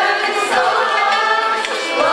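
A women's choir singing a Turkish song, accompanied by oud and violin.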